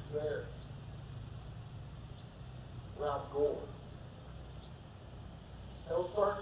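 An insect chirping outdoors: short high chirps repeating about once a second, over a steady low hum. Two brief bits of a man's voice come over the microphone, near the start and about three seconds in.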